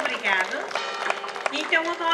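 Voices with sliding pitch sing over the held notes of a Portuguese folk group's instrumental accompaniment.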